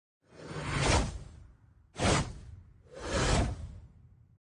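Three whoosh sound effects of an animated title card. The first and third swell up over about half a second and fade; the middle one starts sharply about two seconds in and then fades.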